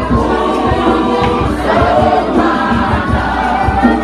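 A youth choir singing an isiXhosa song, many voices together, loud and steady, over a quick low beat.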